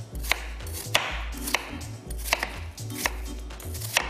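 A large kitchen knife chopping peeled apple on a wooden board. The blade knocks the board about six times at an unhurried, even pace.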